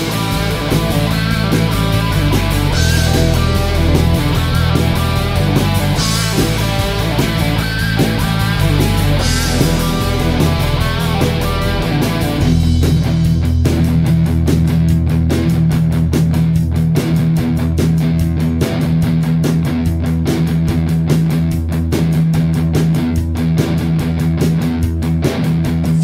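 Instrumental break of a rock song: electric guitars, bass and drums with no vocals. Sustained chords with cymbal crashes give way about halfway through to a tighter, choppier run of quick drum hits over a held bass note.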